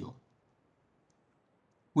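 Near silence between a man's spoken phrases, with a faint click about a second in.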